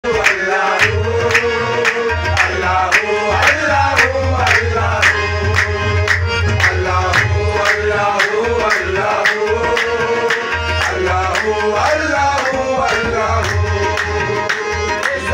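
Harmonium playing a melody in sustained reedy notes over a low drone, with hand percussion keeping a steady beat. The music is instrumental, with no singing.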